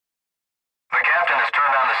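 Silence for about a second, then a voice starts an airline-style cabin announcement about the seatbelt sign, sounding thin, as if through a loudspeaker.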